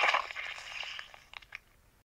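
A crunching, crackling sound effect that starts suddenly and fades away over about a second and a half, with scattered sharp clicks through it.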